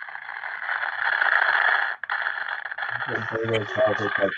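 Radio static: a steady, tinny hiss that cuts out for an instant about two seconds in. Voices start to come through it near the end.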